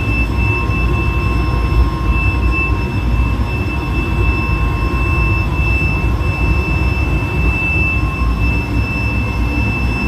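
Steady, loud machine noise in a workshop: a low rumble with a constant high-pitched whine over it, running without change.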